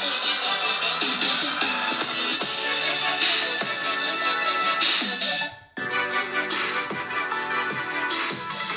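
An electronic music track playing through the iPad Air 4's built-in stereo speakers, cutting off about five and a half seconds in; the same track then starts again from the M1 MacBook Air's built-in speakers.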